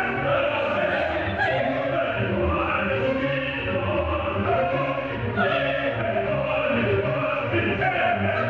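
Operatic singing with orchestra, with chorus voices joining the soloists, from a live stage performance.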